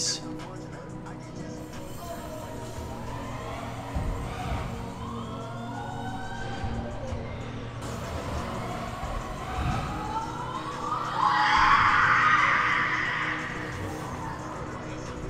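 Bike tyres rolling on wooden indoor ramps, with a hum that rises in pitch as the rider gathers speed, twice. A dull thump comes about four seconds in and another near ten seconds, and a loud rush follows as a rider passes close near the end, over a low steady background.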